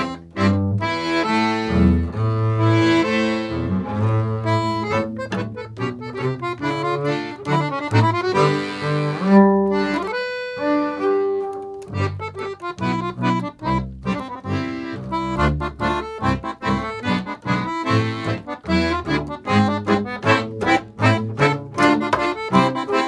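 Accordion and bowed double bass playing a duo tune. About halfway through the music breaks off briefly, then resumes with shorter, choppier notes.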